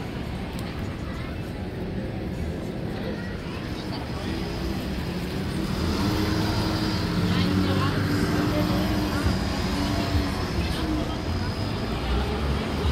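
Busy city street traffic with a steady low engine rumble. From about four seconds in, a drawn-out, wavering voice rises over it and holds long notes.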